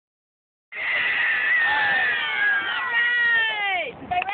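A group of young children shouting together in one long, high-pitched cheer. It starts just under a second in and trails off, falling in pitch, near the end.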